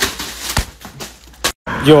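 A plastic bag being handled, rustling and crinkling with a few sharp crackles, cut off suddenly after about a second and a half.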